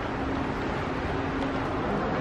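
Steady outdoor street ambience in a pedestrian shopping street: an even hiss and rumble with a faint low hum that fades in and out.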